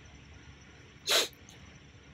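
A single short, sharp rush of breath, like a sniff or quick inhale, about a second in, against quiet room tone.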